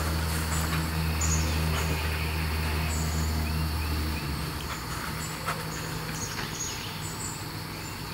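Outdoor ambience: a steady low hum, its deepest part cutting off about four seconds in, with short bird chirps and insect sounds over it.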